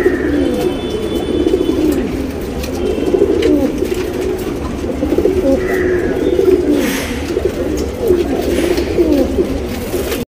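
Domestic pigeons cooing continuously, several low coos overlapping one another.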